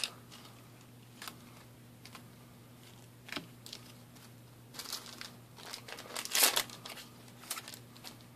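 Trading cards and foil booster-pack wrappers being handled in short scattered rustles, the loudest a little past six seconds in. A faint steady low hum runs underneath.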